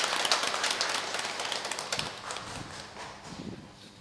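Congregation applauding, the clapping thinning out and dying away about three and a half seconds in.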